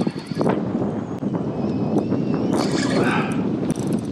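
Wind buffeting the microphone and choppy water slapping against a kayak while a hooked redfish is fought beside the boat, with scattered knocks and a louder burst of noise about two and a half seconds in.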